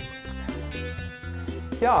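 Background music with a steady bass line moving in stepped notes; a man's voice begins speaking near the end.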